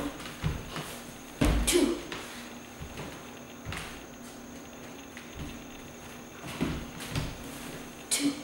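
Bare feet stepping and landing on a hardwood floor during martial-arts kick practice, with a loud thump about a second and a half in and several softer thuds later.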